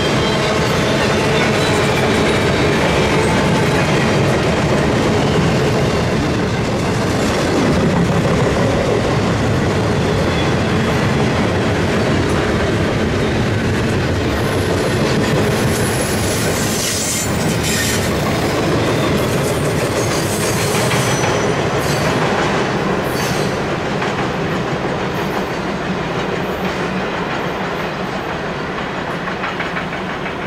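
CSX double-stack intermodal freight cars rolling past: steady wheel-on-rail rumble with clickety-clack over the rail joints. Brief high-pitched wheel squeals come through around the middle. The sound eases a little near the end as the last cars pass.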